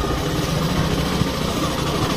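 A Hero Glamour Xtech motorcycle's 125 cc single-cylinder engine running steadily as the bike rides slowly, heard from the handlebar.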